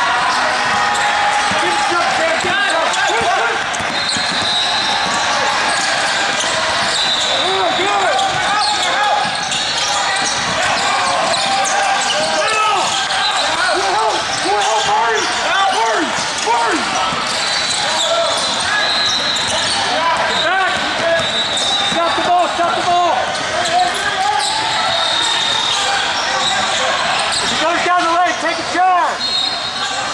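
Game noise in a large sports hall: many voices talking and calling out, and basketballs bouncing on the court floor, all echoing.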